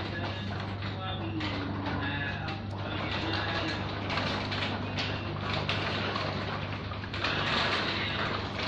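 Strong wind with rain from a dust storm, a steady rushing noise heard from indoors through a closed window, over a steady low hum.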